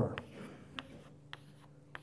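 Chalk on a chalkboard: four short, sharp taps about half a second apart as small circles are drawn one below another.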